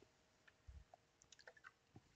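Near silence: room tone with a faint steady hum, one soft low thump a little before the middle, and a few faint light clicks after it.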